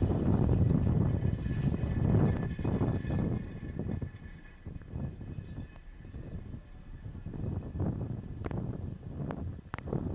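Falcon 9's nine Merlin first-stage engines heard from the ground as a low rumble with crackling. It fades over the first four seconds as the rocket climbs away, then carries on lower and uneven.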